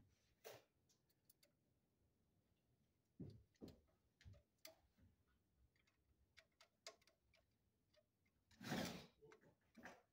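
Faint, scattered clicks and small knocks as a screwdriver works the terminal screw of a 20-amp circuit breaker held in the hand, fastening the circuit's wire; a brief louder burst of noise comes near the end.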